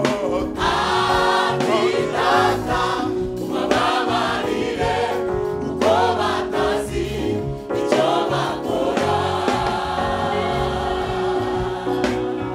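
A gospel church choir singing in full voice with electric guitar and band backing, the voices rising and falling over steady sustained chords and a low rhythmic bass line.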